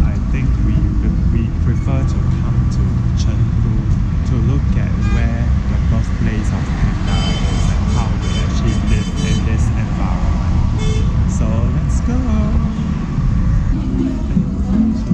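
Road traffic: a steady low rumble of vehicles, with a horn sounding for about two seconds midway and faint voices.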